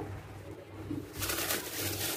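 A thin plastic bag crinkling as a hand reaches in among the mandarins, starting a little over a second in after a quieter first second.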